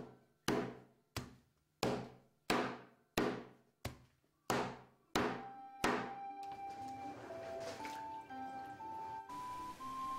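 An oak stick beating softened kozo bark on a stand to loosen its fibres: a steady run of about ten dull strikes, about one and a half a second, each trailing off in a ringing decay. The strikes stop about six seconds in, and a slow melody carries on alone.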